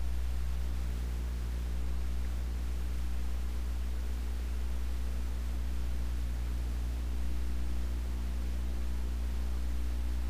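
A steady low hum with a faint even hiss over it, unchanging throughout, with no distinct events.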